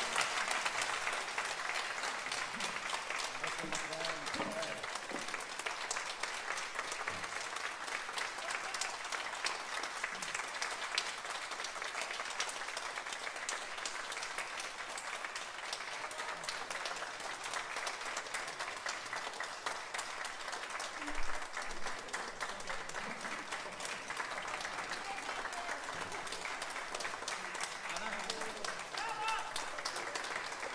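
Audience applauding steadily, many hands clapping together, with a single low thump about two-thirds of the way through.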